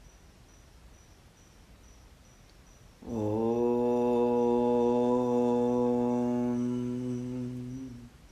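A man's voice chanting one long, steady mantra syllable at a low, even pitch, starting about three seconds in and held for roughly five seconds. Faint cricket chirping at an even pace runs beneath it.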